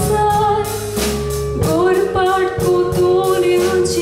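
A woman singing a Konkani tiatr song, holding long notes over instrumental accompaniment with a regular beat.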